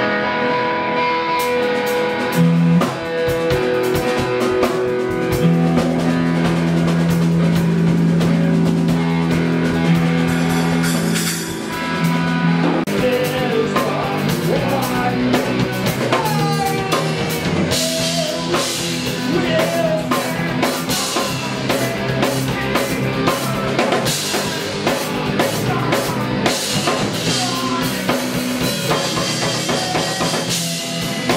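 A rock band playing live together, with electric guitars over a drum kit. Long held chords ring for about the first twelve seconds, then the playing gets busier with heavier cymbals.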